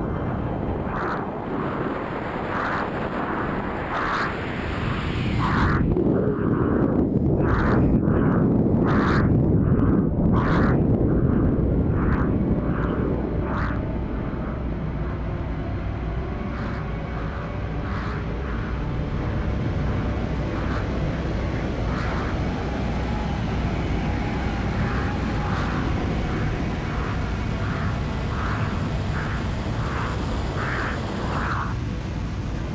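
Rushing airflow rumble from a freefalling jumper's body-mounted camera. It swells about six seconds in and eases after about fourteen. Over it runs a soft, regular pulsing, a little faster than once a second.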